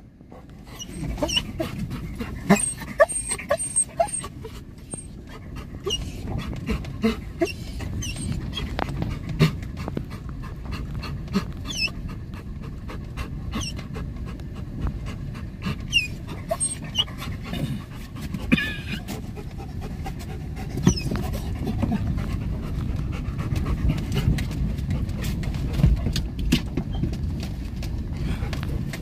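A dog panting, with a few short whines, over the low rumble and frequent knocks of a car moving slowly along a rough dirt road.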